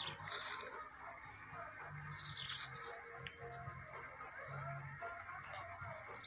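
Quiet outdoor ambience: a steady high-pitched insect drone, a short bird chirp about two seconds in, and a faint low hum that comes and goes.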